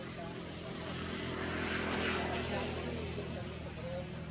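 A propeller aircraft passing overhead: a steady engine drone that swells to its loudest about halfway through and then begins to fade.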